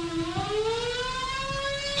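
Civil defense air-raid warning siren sounding an alert of attack, its pitch dipping slightly and then rising steadily, levelling off near the end.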